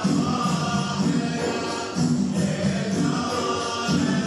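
A group of men singing in unison with percussion, in phrases with a short break about two seconds in: the chant of a Bahraini ardah sword dance.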